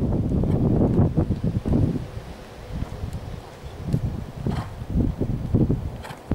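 Wind buffeting the microphone, heaviest for about the first two seconds, with the hoofbeats of a horse trotting on a sand arena coming through as a rough, even beat once the wind eases.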